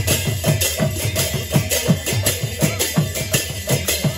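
Kirtan percussion: double-headed barrel drums (mridanga) beaten in a fast, even rhythm of about three strokes a second, with brass hand cymbals clashing on the beats.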